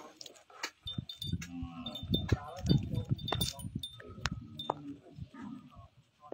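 Light metallic clinking and jingling, with brief ringing tones. Low rumbling and thumping runs through the middle of the stretch.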